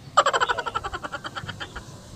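A man laughing: a quick run of short ha-ha pulses that starts just after the opening and fades away near the end.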